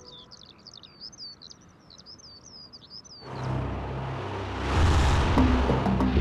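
A bird chirping and twittering rapidly in a quiet open landscape. About three seconds in, this gives way to a swelling rush of noise with low drum beats, which is the loudest sound.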